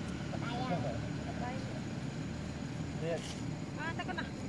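Brief, faint snatches of people's voices over a steady low rumble.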